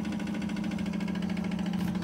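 Wilesco toy steam engine running fast: a steady hum with a rapid, even mechanical clatter.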